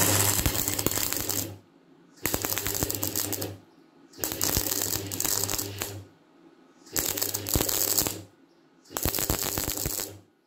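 Wire-feed (MIG-type) welder arc crackling and sizzling as it welds square steel tube, in five bursts of one to two seconds with short pauses between them, stitch or tack welding. A low mains hum from the welder comes in with each burst.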